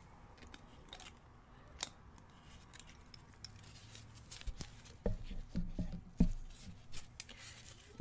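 Faint clicks and taps of small oil bottles being handled and opened on a tabletop, with a few dull knocks about five to six and a half seconds in.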